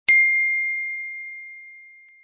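A single high, bell-like ding, struck once and ringing out in one long fading tone.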